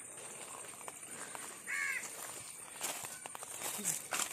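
A bird call, a single harsh call about two seconds in, over faint garden background; light rustling and clicks from handling or stepping near the end.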